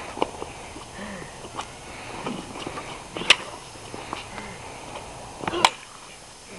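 Sharp wooden knocks of sticks striking, a few scattered hits over several seconds, the loudest about halfway through and a quick cluster near the end, with faint voices underneath.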